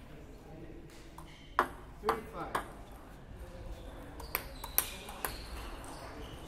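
Table tennis ball bouncing: two runs of three sharp ticks, each about half a second apart.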